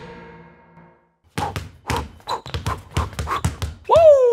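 Basketball dribbled on a hard floor: a quick, uneven run of bounces starting about a second and a half in.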